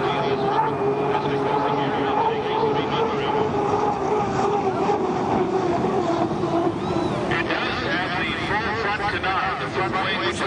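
Turbine engine of an Unlimited hydroplane running at speed: a steady whine that slowly sinks in pitch as the boat runs along the course. People talk over it from about seven seconds in.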